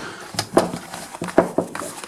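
Handling of a canvas web cartridge belt: a few sharp clicks and knocks from its metal hooks and fittings, with cloth rustling.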